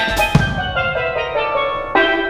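Live steel pan playing a quick run of ringing notes with the band. About a third of a second in there is one drum hit, after which the drums and cymbals drop out, leaving the pan notes over a low bass note. The full drum kit comes back just after.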